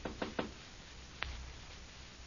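Sound-effect knocking on a door in a 1938 radio drama transcription: a quick run of raps, about five a second, ending in the first half-second, then a single sharp click about a second later.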